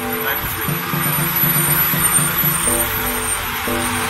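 Steady engine and road noise from a slow line of vehicles, mixed with music holding long chords that change about every second.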